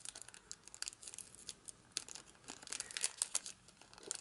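Cellophane wrap crinkling and tearing as fingers peel it off a small perfume box: a quiet, irregular run of sharp crackles.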